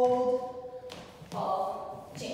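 A song with a singer holding a long note that fades just before the middle, then a second held note about a second and a half in. A soft thump sounds between the two notes.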